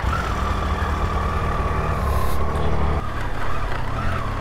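Triumph adventure motorcycle's engine running as the bike pulls away and rides off slowly, shortly after a cold start.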